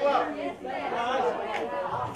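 People talking over one another in a large, echoing hall, with no music playing.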